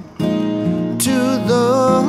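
Two acoustic guitars strummed slowly under a man's singing voice. The music resumes after a brief pause between phrases at the start.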